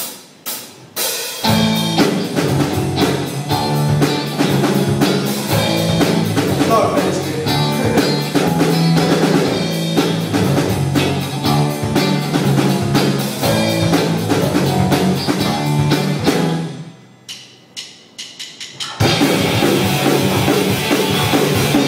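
Live punk rock band with electric guitars, bass and drum kit playing loud. It starts after a few sharp clicks about a second in, cuts to a short stop near the end broken by a few single hits, then the full band crashes back in.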